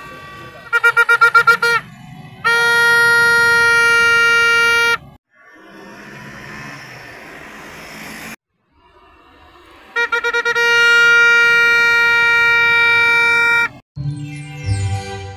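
A horn sounding loudly on a single pitch, twice: each time a quick burst of short toots, then one long steady blast. Between the two is a stretch of street noise.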